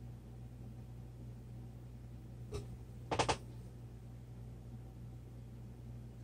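Steady low hum with a faint click about two and a half seconds in, then a quick run of three sharp clicks just after three seconds.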